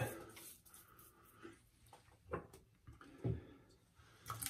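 Faint wet sounds of hands rubbing hot water into a bearded face, with a few brief soft splashes, the two clearest in the second half.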